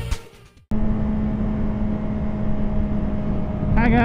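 Intro music fading out, then after a short gap a motorcycle engine running at a steady speed with wind noise while riding. A voice starts near the end.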